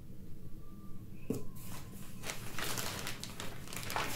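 Packaging rustled by hand: crinkling plastic and bubble wrap in a cardboard box. From about a second in it gives a run of soft crackles and scrapes.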